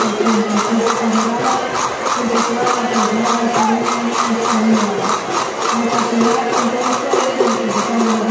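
Folk music in the street: a steady percussion beat of about three strokes a second, jingling like a tambourine, under a melody of long held notes.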